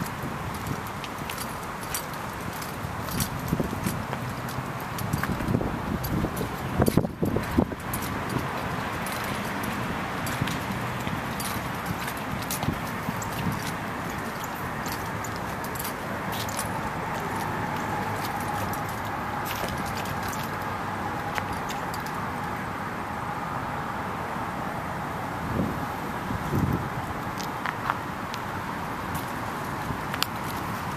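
Steady outdoor background noise with scattered light clicks and jingles: sandal footsteps on asphalt and a leashed dog's gear as handler and dog walk. There is a cluster of louder knocks about seven seconds in.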